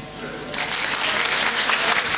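Audience applauding after a stage joke: a dense wash of clapping that swells about half a second in and holds steady.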